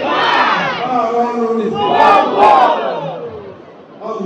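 A crowd of many voices shouting together in two loud waves, the second about two seconds in, then dying away near the end.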